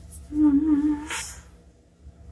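A woman's short closed-mouth hum of about a second, wavering slightly in pitch, as she tries to recall what she meant to say, ending in a quick breath out.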